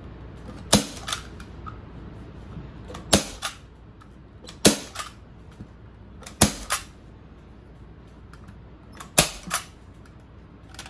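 Arrow PowerShot manual staple gun firing staples through fleece into an ottoman frame: five sharp snaps a couple of seconds apart, each followed by a lighter click.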